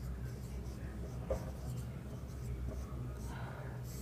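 Marker pen writing on a whiteboard: faint, uneven scratching strokes, with a light tap about a second in.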